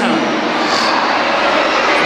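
A loud, steady rushing noise with no rhythm or pitch, running on under a brief trace of a voice at the start.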